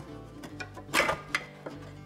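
A few sharp clicks and knocks, the loudest about halfway through, from hands working the end cap on a heater box, over steady background music.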